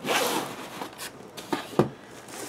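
Cardboard boxes being handled and slid on a tabletop: a rustling scrape of about half a second, then a few light knocks.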